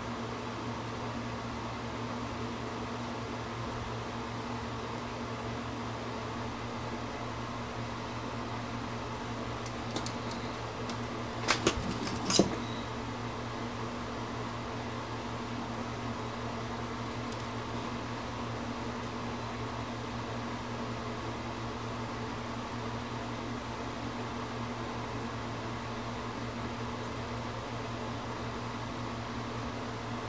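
Steady mechanical hum, like a running fan or mains-powered bench equipment, with a low drone and a few higher lines above it. A small click comes about ten seconds in, then three sharp clicks or taps about two seconds later.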